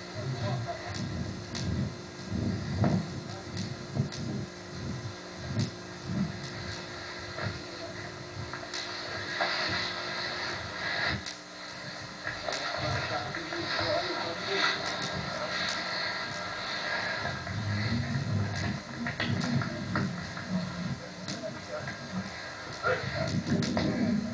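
Muffled, indistinct voices over irregular low thumps of walking and handheld-camcorder handling, with steady hiss from an old videotape.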